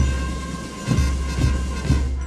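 Band music: sustained chords over heavy, booming low drum strikes, four in quick succession.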